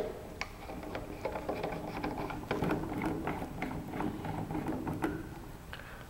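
A microscope objective being screwed by hand into the nosepiece: small irregular metal clicks and scrapes, a few a second, over a faint steady hum.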